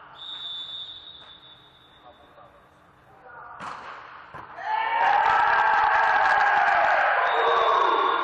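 A volleyball struck hard about three and a half seconds in, with a second smack shortly after, then loud shouting and cheering from several voices, echoing in the big hall, that ends the rally and slowly dies down.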